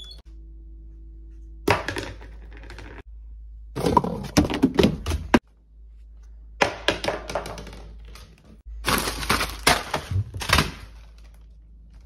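Kitchen items and food packaging being handled in four bursts of clattering, knocking and crackling, with pauses between.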